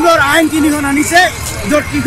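A man speaking loudly and emphatically, over a low steady background rumble.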